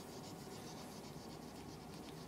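Faint, light scratchy rustling of a small Pomeranian puppy moving through garden plants and grass.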